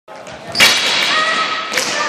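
A loud thud and clatter about half a second in as a group of people drop onto a wooden sports-hall floor with their sticks, followed by voices in the echoing hall and another knock near the end.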